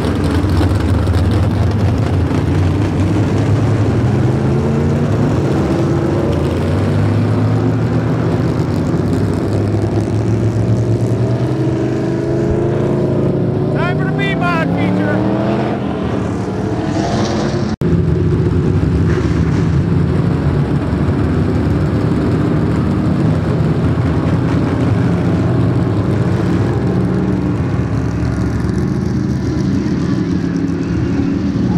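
Several dirt-track B-modified race cars' engines running and revving together, their pitch climbing as they pick up speed, with a sharper rising whine about fourteen seconds in. The sound drops out briefly for an instant near eighteen seconds.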